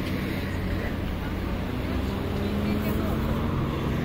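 Street ambience on a busy multi-lane city boulevard: a steady rumble of car traffic, with passers-by talking.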